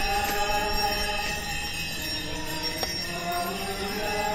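A slow church hymn for a Catholic procession, moving in long held notes.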